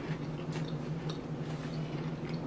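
Quiet chewing of Hide and Seek Choco Rolls, chocolate-filled biscuit rolls: scattered small crunches and mouth clicks, a nice crunch but still kind of soft. A steady low hum runs underneath.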